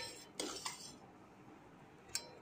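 A metal spoon clinking against a steel vessel of rasam: two light metallic clinks about half a second in.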